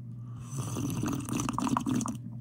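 A person slurping a drink from a mug, a noisy sucking sip that starts about half a second in and lasts about a second and a half.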